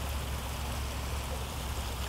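Water trickling and splashing down stacked-stone sphere fountains in a steady hiss, over a constant low rumble.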